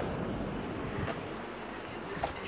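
Steady, fairly quiet outdoor background noise with no distinct events.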